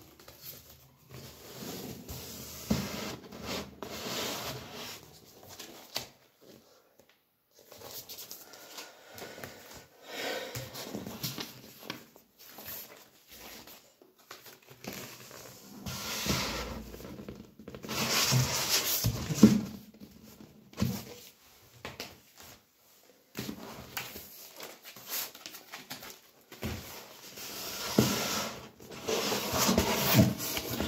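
Cardboard vinyl record sleeves being handled on a desk: irregular rustling and sliding with a few sharp knocks on the tabletop.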